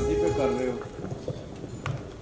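A man singing into a microphone amplified over a hall PA, his sung phrase trailing off in the first second, followed by a lull with a few soft low knocks and a click.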